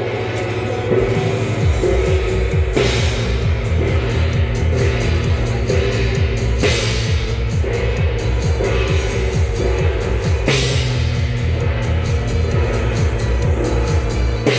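Loud rock-style music with a fast, heavy drum beat. Over it, a large hand-held gong is struck about every four seconds, each strike ringing out in a crash.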